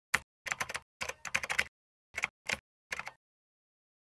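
Computer keyboard keys being typed in several quick runs of clicking keystrokes, stopping a little after three seconds in.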